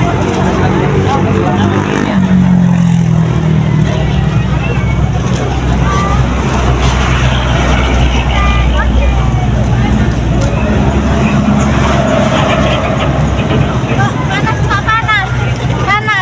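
A truck engine running steadily, its pitch dropping about two seconds in, with people chattering over it.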